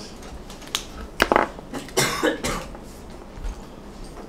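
Whiteboard marker drawn across a whiteboard: several short scratchy strokes, bunched in the first half, as a set of axes and a curve are sketched.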